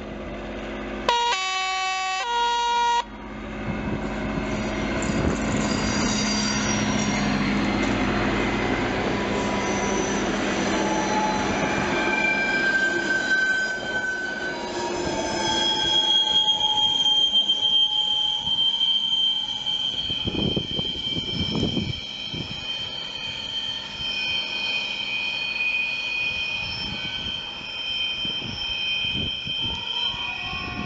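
Diesel-hauled Reblausexpress train sounds its horn about a second in, a blast of nearly two seconds. It then rumbles past with its coaches. From about halfway a high, steady squeal from the wheels rides over the running noise.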